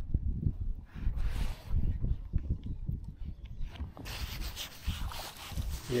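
Wind buffeting and rubbing on a body-worn camera microphone, an irregular low rumble, with a faint hiss coming in about four seconds in.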